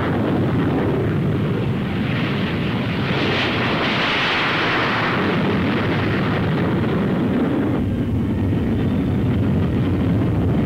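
Jet aircraft engines at takeoff power: a steady rushing noise with a higher hiss that swells midway, then a shift in tone near the end.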